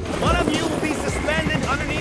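Helicopter running, a steady low rotor and engine noise, with a person's voice over it.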